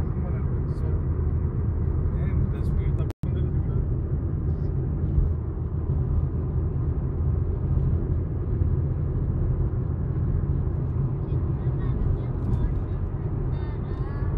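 Steady low road and engine rumble of a car driving, heard from inside the cabin, with a brief complete dropout about three seconds in.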